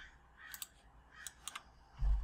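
Faint, scattered clicks of a computer mouse and keyboard, about half a dozen sharp taps spread across the two seconds.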